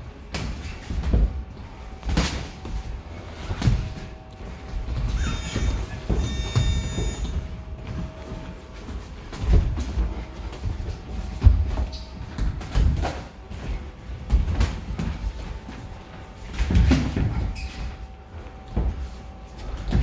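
Boxing sparring: gloved punches and footwork on the ring canvas make irregular thuds and slaps, the sharpest about eleven seconds in.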